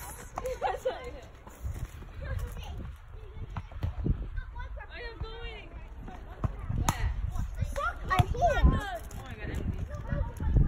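Voices at a playground, among them short calls from a young child, over a steady low rumble on the microphone.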